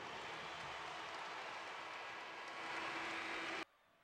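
Arena crowd cheering as a dense, steady wash of noise after a made basket, cut off suddenly near the end.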